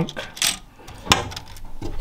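Three light clicks of hard plastic Lego pieces as a small Technic luggage piece is handled and set into the front trunk of a Lego Technic Lamborghini Sián model.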